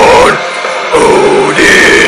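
Harsh growled vocals over a loud Viking/folk metal backing track.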